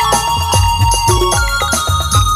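Instrumental passage of Nagpuri band music: an electronic keyboard melody over a steady, even drum beat and bass.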